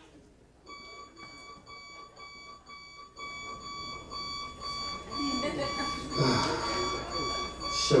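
Digital alarm clock beeping in a steady repeating pulse, about two beeps a second, starting just under a second in. It is heard through the hall's loudspeakers from the video on the big screen.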